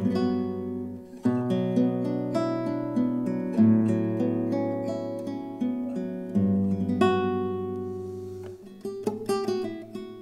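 Nylon-string classical guitar playing the chords of a B minor progression, Gmaj7 and A6/9, each struck with the fingers and left to ring, with a quick run of plucked notes near the end.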